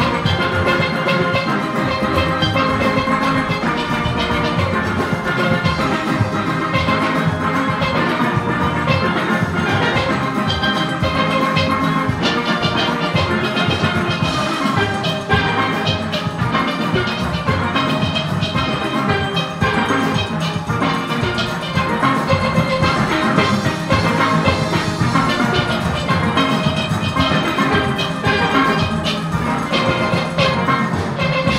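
Full steel orchestra playing: many steelpans sounding at once, from high lead pans down to deep bass pans struck with rubber-tipped mallets, over a steady driving rhythm.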